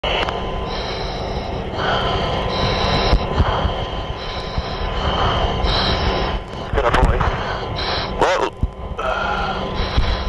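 Indistinct radio voice chatter heard through a loud, steady roar of noise with a constant electrical hum, switching on and off in short stretches.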